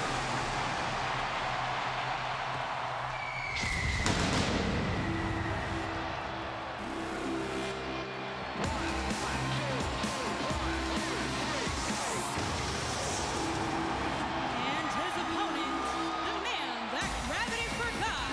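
Arena crowd noise, then about four seconds in a whoosh as a wrestler's entrance music starts over the arena sound system. The music keeps a steady repeating beat over the crowd.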